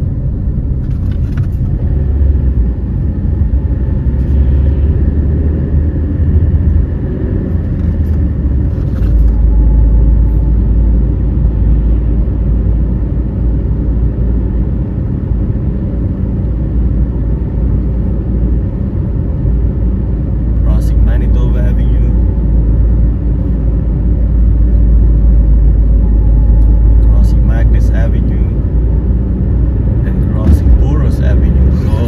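Steady low road and engine rumble inside a moving car's cabin, growing stronger about a third of the way in.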